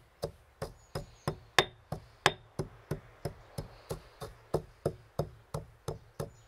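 Stone pestle pounding mustard seeds in a stone mortar: a steady, even run of short knocks, about three a second.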